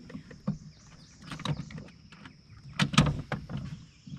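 Scattered knocks and clunks from a bow-mounted Minn Kota PowerDrive V2 trolling motor and its mount being handled on the boat's deck, the loudest cluster about three seconds in.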